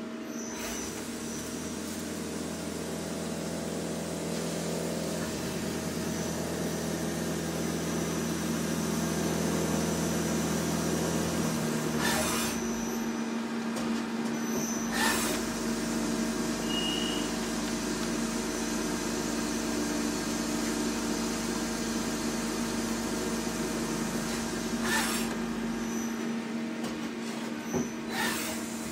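Hitachi Seiki TS15 CNC turning lathe running an automatic machining cycle: a steady hum made of several tones that shift in pitch about five and twelve seconds in, with a few sharp metallic clacks along the way.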